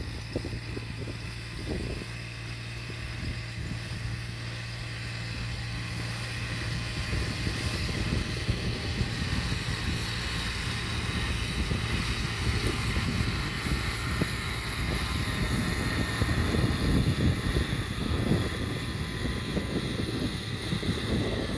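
New Holland farm tractor's diesel engine running steadily under load while pulling a cultivator through dry soil, growing gradually louder over the stretch.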